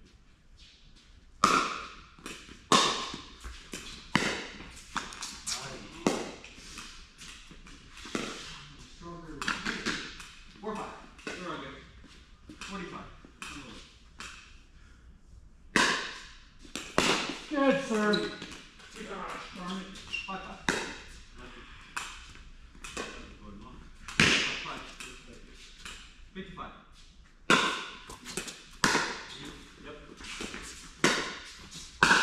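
Pickleball rally: a hard paddle striking a hollow plastic ball, with the ball bouncing on the court, gives sharp pops at irregular intervals, some of them loud. Voices come in between the hits.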